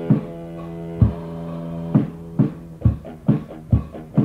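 Lo-fi death/thrash metal from a home-recorded cassette demo. An electric guitar holds a chord over single drum hits about once a second; about halfway through the guitar chord drops away and the drums pick up to about two hits a second.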